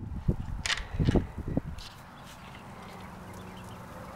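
Low thumps and knocks over the first two seconds as the wooden door of the quail hut is opened and the camera is handled. After that only a faint steady low hum remains.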